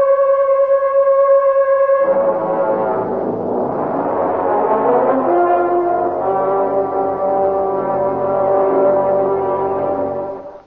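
Brass music: one long held note, then about two seconds in, several brass instruments join in slowly shifting chords.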